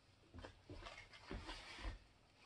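Faint handling noise: about six soft knocks and rustles as a silicone basting brush is worked in and set down in a saucepan of melted beeswax.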